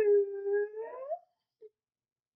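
A man singing unaccompanied, holding one long note that lifts in pitch at the end and breaks off a little over a second in.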